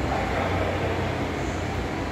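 Steady background hum and hiss of a large indoor room, a continuous low rumble with no distinct events.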